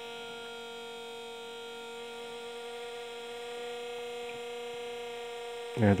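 Home-modified power inverter, just switched on, humming steadily as it runs: one even mid-pitched electrical tone with a row of overtones.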